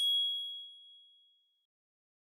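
A single bright, high ding from a logo sting chime. It strikes at the start, rings on one clear tone and fades out over about a second and a half.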